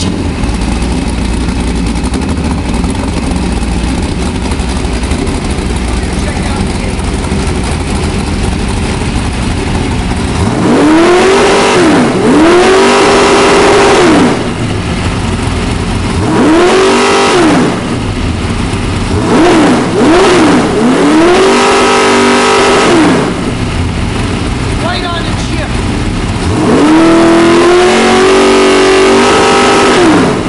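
Chevy 327 small-block V8 crate engine with a roller camshaft, running on an engine run stand. It idles steadily for about ten seconds, then is revved repeatedly: quick throttle blips and several held revs of a second or two, the last held about three seconds near the end.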